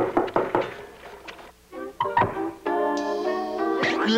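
Cartoon soundtrack: a quick series of knocks on a window in the first second, a few more scattered hits, then music with held chords starting a little under three seconds in.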